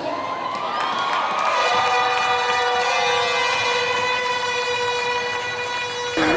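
Arena horn or siren sounding one long tone that glides up over its first second or so and then holds steady, over a crowd cheering.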